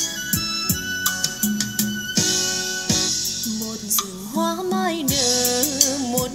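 Pop music with a steady drum beat played back through a JBZ-108 trolley karaoke speaker with a 20 cm woofer; a singing voice comes in about four seconds in. The reviewer judges the sound balanced and detailed, though not impressive.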